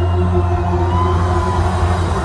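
Live rock band music heard loud from within the crowd of a concert hall, with a strong, steady deep bass under held notes.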